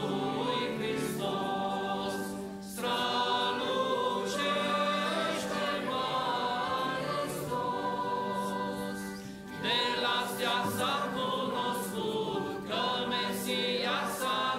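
A mixed church choir singing a hymn in long held phrases, with short breaks between phrases about three and ten seconds in.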